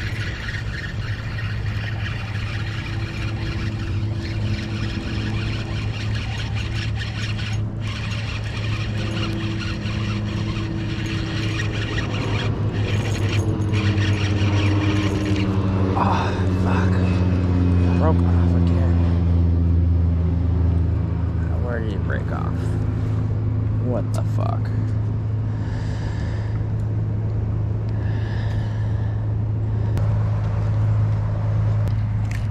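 A steady low engine hum runs throughout, its pitch shifting and growing louder about halfway through, with faint voices over it.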